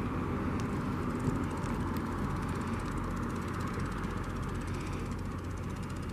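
Steady outdoor rumble: an even, unbroken mix of low hum and wide noise, with no distinct events.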